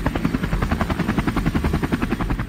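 Helicopter sound effect: a steady, rapid rotor chop.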